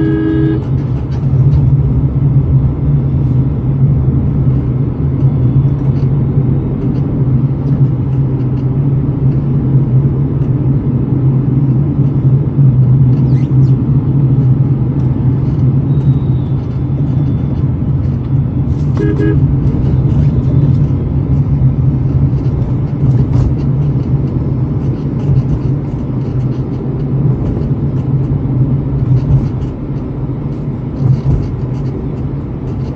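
Steady low drone of a car's engine and road noise heard from inside the cabin while driving. A vehicle horn honks briefly at the start and again about two-thirds of the way through.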